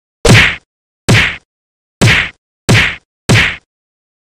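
Five short, loud whack sound effects from a title animation, one after another with silence between them. They come about a second apart at first and closer together toward the end.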